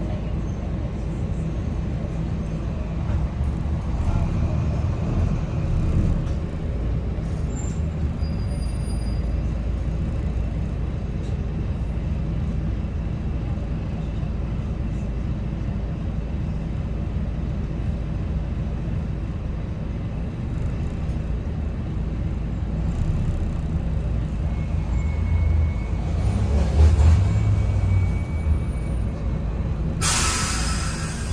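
Volvo B9TL double-decker bus's six-cylinder diesel engine running, heard from the upper deck as a steady low drone as the bus moves. The drone swells for a few seconds near the end, with a brief hiss.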